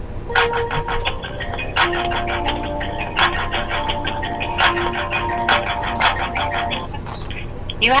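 On-hold music coming through a telephone's speaker while the call is being transferred: sustained notes that change pitch over a regular beat.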